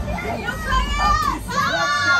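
Riders' high-pitched excited shouts and squeals over a low rumble from the ride.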